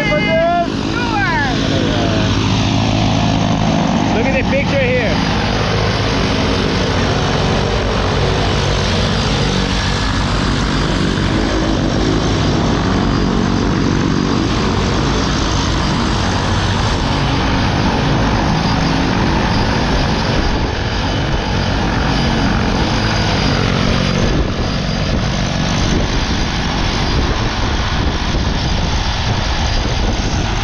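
Twin-engine propeller plane running on the ground close by: a loud, steady engine-and-propeller drone with the rush of prop wash blowing over the microphone. Brief voices near the start and again a few seconds in.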